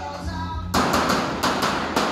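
Thin sheet metal of a large rolled cladding cylinder clattering as it is worked at the seam: a quick, irregular run of loud knocks and rattles starting about a third of the way in, over radio music.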